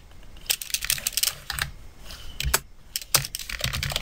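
Typing on a computer keyboard: quick, irregular keystroke clicks, with a brief pause a little after the middle.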